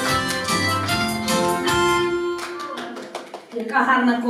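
Recorded dance music with a bass line; the bass drops out about two seconds in and the music fades away shortly before a voice begins near the end.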